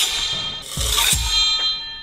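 Metal replica energy-sword blade striking a brick wall and ringing on like a tuning fork, a clear metallic ring at several pitches. It is struck again about a second in, and the ringing carries on after each hit.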